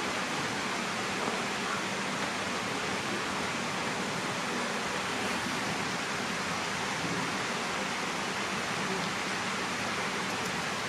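A steady, even rushing noise that does not change, with a faint low hum under it.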